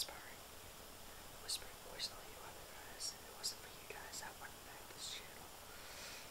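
A man whispering soft, unvoiced speech, with sharp hissing s-sounds every half second to a second.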